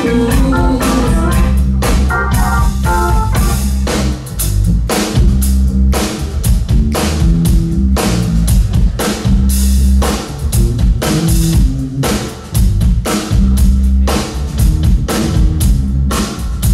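Live band playing an unrehearsed groove: drum kit keeping a steady beat over bass, electric guitar and keyboard, with no lead vocal after the first moment.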